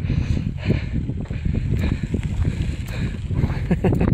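Wind buffeting the microphone with a constant low rumble, over regular crunching footsteps on a gravel dirt road.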